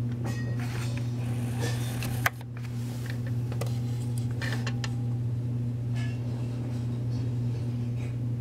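A steady low hum with a few faint clicks and ticks; a sharper click comes about two seconds in, after which the hum is slightly quieter.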